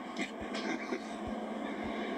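Faint, indistinct talk from a television broadcast, heard through the TV's small speaker with little bass.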